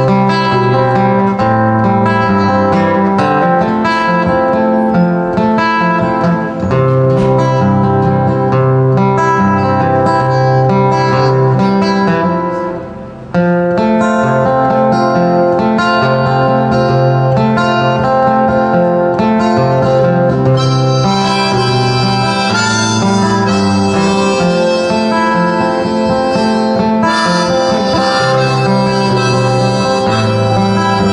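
Instrumental break of a folk song: a harmonica in a neck rack plays the melody over an acoustic guitar. The music dips briefly about thirteen seconds in, then carries on.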